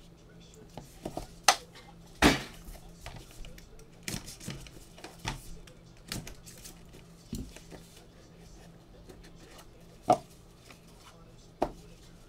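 Cardboard trading-card boxes being handled and opened with gloved hands: a string of taps, knocks and scrapes, loudest about a second and a half and two seconds in, and twice near the end.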